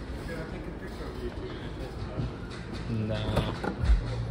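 Background voices of people talking in a busy showroom, with one voice standing out about three seconds in and a low thump near the end.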